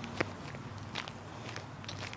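Footsteps of a person walking, a few steps roughly a second apart, the sharpest about a quarter second in.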